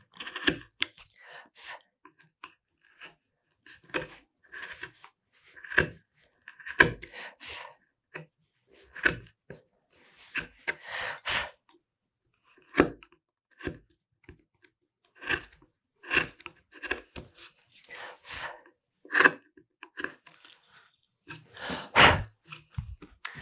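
A #3, 6 mm carving gouge pushed by hand through mahogany, paring off a corner to round it: a series of short, irregular crisp slicing cuts with brief pauses between.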